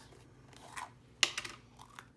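A plastic jar of gesso and a paintbrush being handled over a craft mat: light scraping and rustling, with one sharp click a little past one second in.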